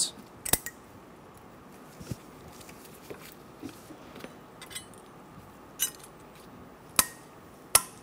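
Spring-steel brake pad shims being snapped onto a cast-iron caliper bracket: a handful of sharp metallic clicks and clinks spaced a second or more apart, the loudest ones near the end.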